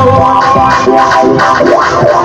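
A live band playing loudly through a PA system: sustained keyboard chords over a steady beat.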